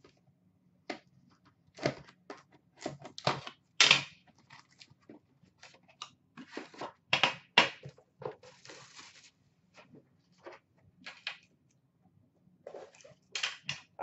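A cardboard box of hockey cards being opened by hand and its metal tin taken out and set down on a glass tabletop: irregular clicks, knocks and crinkles, with a longer stretch of rustling or scraping about eight seconds in.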